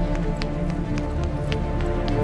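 Music playing, with the quick footsteps of a person running on hard ground.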